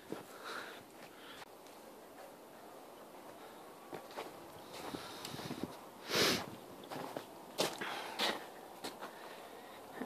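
Quiet, irregular footsteps on packed snow and ice, with one louder rush of noise about six seconds in.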